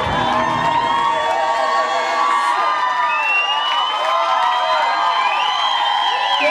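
Crowd cheering and whooping, many voices shouting and screaming at once. The music's bass fades out about a second or two in, leaving the crowd.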